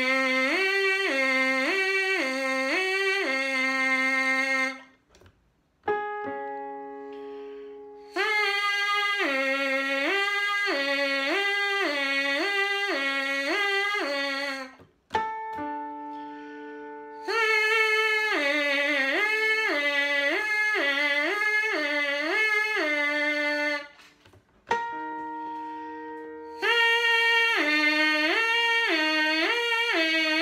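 Trumpet mouthpiece buzzed on its own, slurring rapidly back and forth across a fifth on the 'hee' tongue syllable, in four sets of several alternations each. Each set is pitched a little higher, and short held keyboard notes sound in the gaps between sets.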